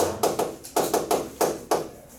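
Chalk on a chalkboard as a word is written: a rapid run of sharp taps and short strokes that stops near the end.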